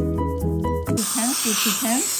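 Background music with a steady beat that cuts off abruptly about a second in. It gives way to the steady hiss of a dental suction tube drawing air and fluid from an open mouth, with a voice sounding over it.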